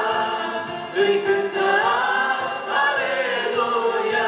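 A praise group of men's and women's voices singing a gospel song through microphones, over instrumental accompaniment with a steady beat.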